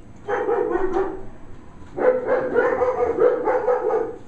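A dog giving two drawn-out vocal calls, a shorter one of about a second and then a longer one of about two seconds.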